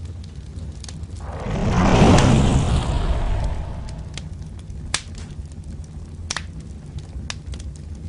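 Fireball sound effect: a whoosh swells up over a steady low rumble, peaks about two seconds in and dies away, followed by a few sharp fire crackles.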